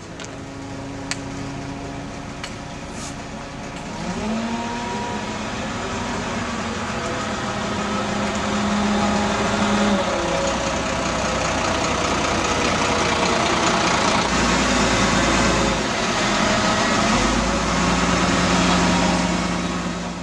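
Volvo B6LE single-decker diesel bus pulling away and driving past. The engine note rises about four seconds in, holds, and drops about ten seconds in, and the sound grows louder as the bus comes by.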